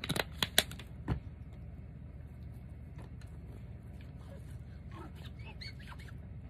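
Hands handling things on a craft table: a quick run of sharp clicks and knocks in the first second or so, then a low steady hum.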